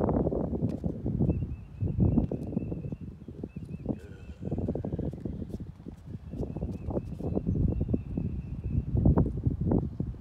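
Wind buffeting the microphone in gusts, a rumble that rises and falls, with faint steps of a person and a dog walking on concrete. A faint high warbling sound comes twice in the background.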